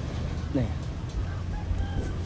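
A rooster crowing faintly in the distance, over a steady low rumble of wind on the microphone.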